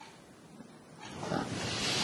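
Rustling and scraping of movement as a seated man leans forward to get up. It starts near-silent and grows louder from about a second in, the sound of his cassock rubbing against his clip-on microphone.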